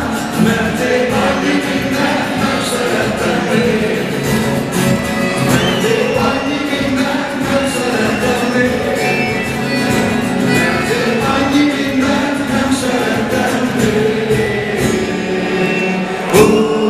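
Live acoustic band music: accordion and acoustic guitars playing over a beating bass drum, with some singing.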